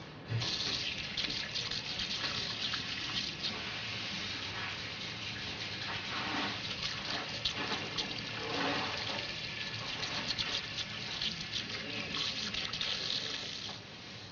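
Water from a wall-mounted tap running steadily into a bowl-shaped vessel basin. The tap is turned on about half a second in and shut off near the end.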